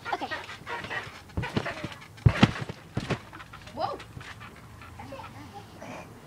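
Feet and hands thudding on a trampoline bed during a handspring attempt, several thuds in a row with the loudest about two seconds in.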